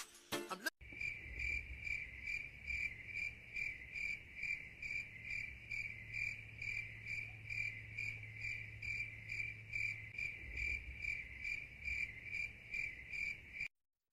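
A cricket chirping steadily and faintly, a little over two chirps a second, until it cuts off just before the end.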